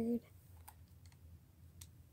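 Faint handling noise, with two soft clicks about a second apart, as plush toys are moved about. A spoken word is just ending at the start.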